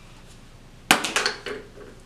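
A sudden clatter of hard objects: four or five sharp knocks in quick succession about a second in, the first the loudest, with a short ring after.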